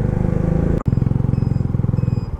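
Small motorcycle engine running steadily as the bike is ridden, an even pulsing hum, with a sudden brief dropout a little under a second in before it carries on.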